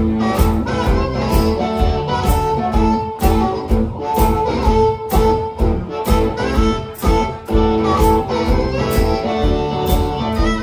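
Live blues-rock duo playing: amplified harmonica cupped to a microphone, wailing sustained notes, over guitar and a steady percussive beat of about two hits a second.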